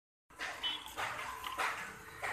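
A dog barking: a few short barks spread over a second or so, after a brief moment of dead silence at the start.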